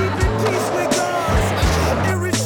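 Hip-hop track with a steady beat and bass line, with the clatter and rolling of a skateboard underneath it.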